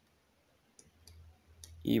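A few faint, irregular clicks, then a man's voice starts speaking just before the end.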